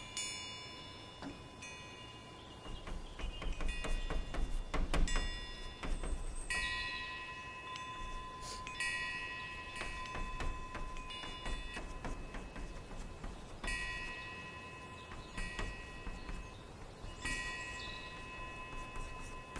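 Chalk writing on a blackboard, with short sharp taps and strokes that are loudest about four to five seconds in. Clear bell-like chime tones strike and ring out for a second or two, about every couple of seconds throughout.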